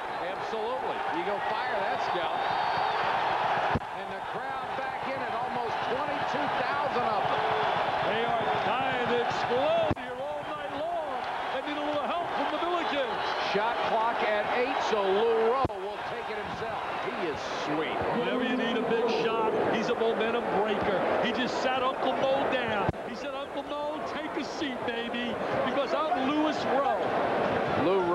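Arena crowd noise of many voices during live basketball play, with a ball being dribbled on the hardwood court. The sound drops suddenly in level a few times.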